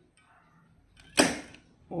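A single sharp clack about a second in from a PLC control panel as the start command is given and the panel switches on, fading quickly.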